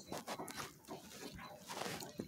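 A person chewing a mouthful of bagel sandwich close to the microphone: faint, irregular wet clicks and smacks of the mouth.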